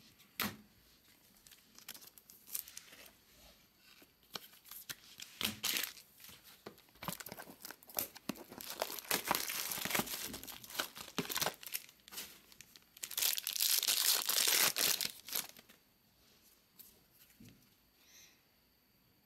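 Wrapper of a 2022 Bowman Inception baseball card pack being torn open and crinkled by hand, in irregular bursts. The longest, loudest crinkling comes about halfway through and again near three-quarters of the way.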